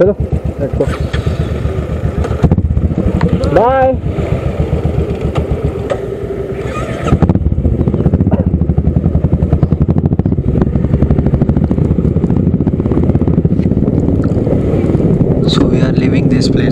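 Motorcycle engine running with a rapid pulsing exhaust, getting clearly louder about seven seconds in as the bike moves off and rides on steadily.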